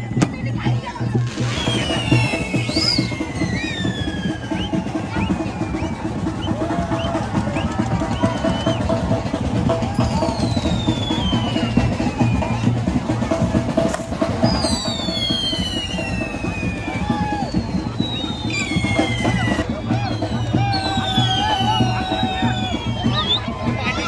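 Festival drumming: a fast, steady drum roll with crowd voices over it. Several high, falling whistles sound above the drums.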